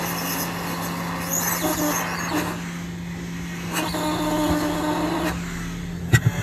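Hot air rework gun blowing steadily, a continuous airy hiss over a low hum, melting solder paste on a BGA stencil while reballing a phone CPU.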